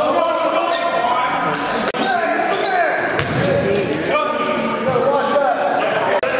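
Live indoor basketball game sound echoing in a gym hall: a ball bouncing on the court, sneakers squeaking, and players' voices calling out.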